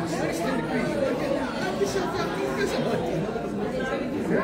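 Several people chatting in a large room, voices overlapping into an indistinct murmur with no clear words.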